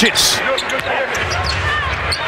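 Live NBA court sound: a basketball being dribbled on the hardwood floor and sneakers briefly squeaking, over a steady arena crowd murmur.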